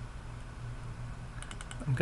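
A quick run of light clicks at a computer, about one and a half seconds in, over a steady low electrical hum.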